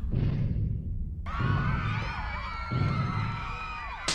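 Cartoon soundtrack: heavy low thuds about every second and a half, with several wavering, gliding high wails coming in about a second and a half in and running over the thuds.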